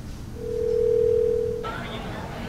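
Telephone ringback tone: one steady ring tone about a second long, the line ringing before the call is answered. It is followed near the end by a faint telephone-line hiss.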